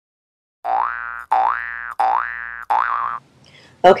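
Cartoon-style boing sound effect played four times in quick succession, each a short tone sliding upward in pitch, the last one wobbling. A woman starts talking near the end.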